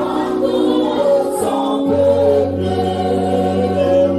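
Gospel worship singing: a group of voices holding slow, sustained notes, led by a man singing into a microphone. A low steady bass note comes in about two seconds in.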